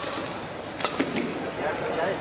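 Badminton racket striking a shuttlecock: one sharp smack a little under a second in, then a fainter tap, with faint voices near the end.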